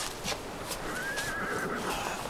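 A horse whinnying off-screen: one short, wavering call about a second in, among scattered knocks like hooves.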